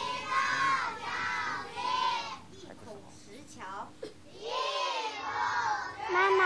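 A class of children reciting a lesson text in unison, chanting a short line in slow, drawn-out syllables, then starting the next line after a pause of about two seconds.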